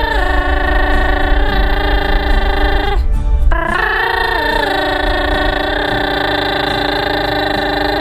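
A woman's voice singing two long held "ah" notes over a backing track, each note scooping up into a pitch and held with vibrato, with a short break about three seconds in. The music cuts off at the very end.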